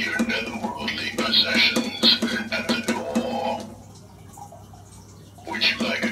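Motion-activated animated skeleton butler Halloween prop playing a recorded voice phrase with music through its built-in speaker. The sound stops about two-thirds of the way through and starts again near the end.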